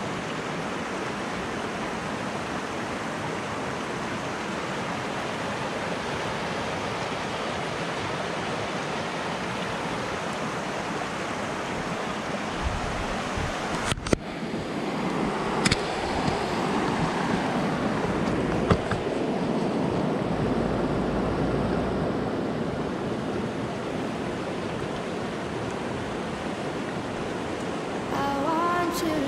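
Shallow mountain river running over stones and boulders, a steady rushing of water. The sound breaks off for a moment about halfway, and a few sharp clicks follow.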